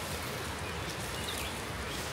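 Steady outdoor background hiss in woodland with no distinct events, the sound of the surroundings between words.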